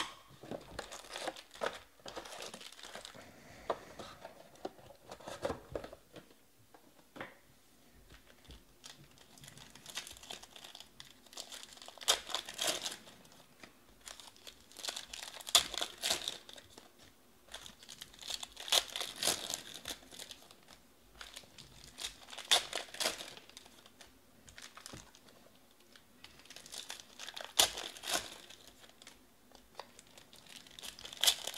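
Foil wrappers of 2020 Panini Prizm baseball card packs being ripped open and crinkled by hand, in bursts every few seconds with quieter gaps between.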